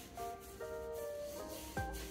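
Quiet background music: soft held notes that step from one pitch to another, with a single light knock near the end.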